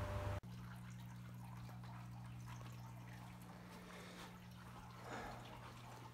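A louder hiss cuts off abruptly less than half a second in, leaving faint indoor room tone with a steady low electrical hum.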